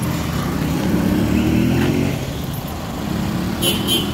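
A car engine running close by, its pitch rising over the first two seconds as it speeds up, then fading.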